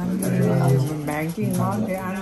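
An elderly woman's wordless vocal sounds: one long drawn-out moan held on a steady low pitch, then a shorter one after a brief break.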